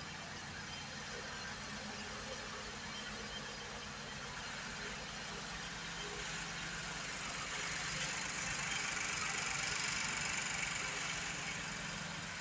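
2017 Infiniti Q60's 3.0-litre twin-turbo V6 idling steadily. It grows a little louder past the middle as the open engine bay comes near.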